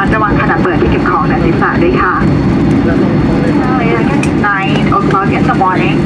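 Boeing 737-800 cabin noise while rolling out on the runway after landing: a steady low rumble from the engines and the rolling airframe. A cabin PA announcement is heard over it, pausing briefly around the middle.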